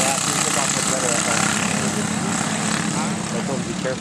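Engines of a pack of racing karts running on the track, a steady drone whose pitch rises and falls as the karts change speed through the turns.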